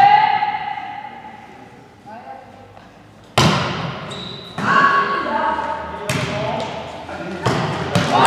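A volleyball being struck four times in a rally, each a sharp smack that rings in a large sports hall. The first hit comes about three and a half seconds in and the rest follow roughly every second and a half. Players' shouts and calls come between the hits.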